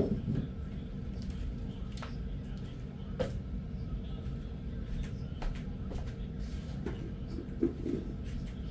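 Short knocks and clicks of kitchen items being put away in a wall cupboard and shakers being set down on a wooden table, the loudest knock at the very start and a few lighter ones spread through, over a steady low hum.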